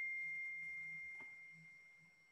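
A single high, pure ringing tone, bell-like, fading steadily away until it is barely there at the end.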